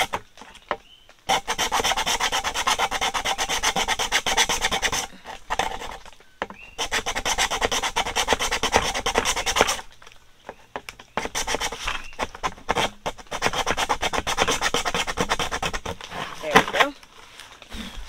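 Small hand saw cutting a slit through the wall of a plastic five-gallon bucket, rapid back-and-forth rasping strokes in three bouts with short pauses between.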